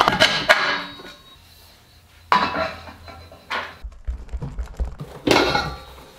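Aluminium T-slot extrusion pieces clinking and clattering as they are handled and fitted together, in three short bursts of knocks.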